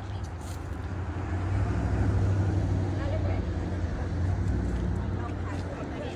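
A road vehicle passing: a low engine rumble that grows to its loudest about two seconds in, then slowly fades.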